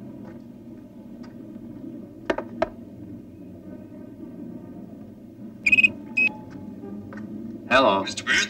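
Short electronic tones from a brick-style mobile phone, in two pairs of brief beeps, the second pair higher and brighter, over a low steady hum. A man's voice starts near the end.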